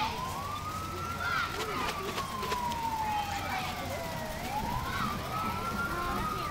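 A vehicle siren on a slow wail: the pitch climbs in about a second, then slides down over roughly three seconds, and climbs again near the end.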